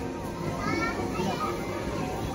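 Background noise of a busy indoor playground: faint children's voices and chatter from around the play area.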